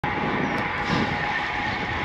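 Steady rush of wind and tyre noise from a road bike rolling along a paved path, picked up by a camera on the moving bike.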